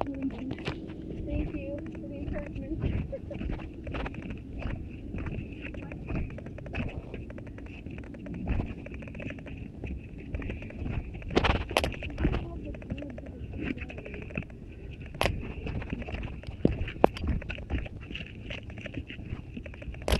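Irregular footfalls thudding down the timber ties of a steep old railway stairway, heard muffled because a finger is covering the microphone, with a few sharper knocks partway through.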